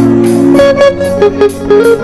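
Live band music played loud: a held chord gives way about half a second in to a lead line of short, clipped notes, over regular cymbal strokes.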